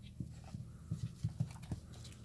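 Handling noise: about six soft, low knocks and faint clicks as gloved hands lift coins and open a hardcover coin album on a padded mat.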